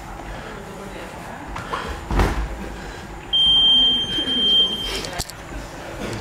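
A punch landing with a dull thud, then a single steady electronic beep from a boxing-gym round timer, held for almost two seconds.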